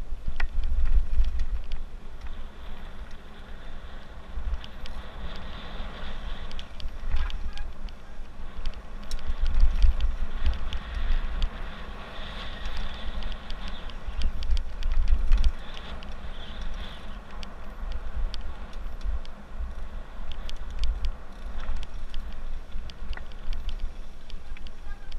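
Mountain bike riding fast down a dirt and gravel trail: tyres rolling over loose ground with constant rattling and clatter from the bike, and gusting wind buffeting the camera microphone. A high hiss rises and fades twice in the middle stretch.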